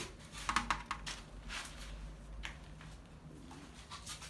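Faint handling noise: a few short clicks and rustles, most of them in the first second and a half, over a low steady hum.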